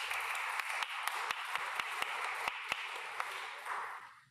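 A church congregation applauding: a steady round of hand clapping that tails off near the end.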